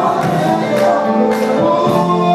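Live gospel music: a male vocal group singing in harmony with a band that includes bass guitar, over a steady beat struck nearly twice a second.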